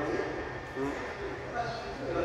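Rubber-tyred VAL metro train running slowly through a tunnel, a steady low hum, with a man's brief murmur about a second in.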